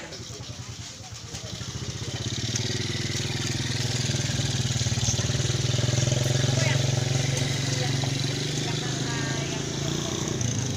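Small motorcycle engine running close by with a fast, even putter, growing louder over the first few seconds and then holding steady.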